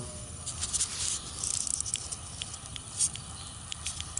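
Scattered light ticks and clicks over a faint outdoor background hiss, with no insect buzz.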